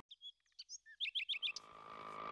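Birds chirping: a quick series of short, high chirps over about a second and a half. Near the end a faint engine hum fades in and grows louder.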